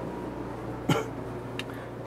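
A man gives a single short cough about a second in, close on his clip-on microphone. Under it runs the steady low hum of the motorhome's roof air conditioner.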